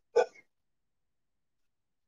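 A single brief throat sound from a person, like a hiccup or gulp, lasting about a quarter second just after the start.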